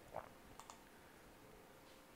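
Near silence, with a few faint computer input clicks early on: one short click, then two fainter ones soon after.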